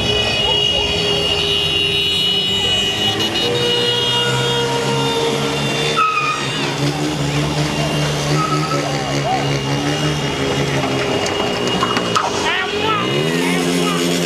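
Car engines running on a street, one rising in pitch near the end as it revs, with people shouting over them.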